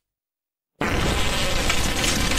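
A cartoon fart sound effect: a long, loud, buzzy blast that starts suddenly about a second in, after a moment of silence.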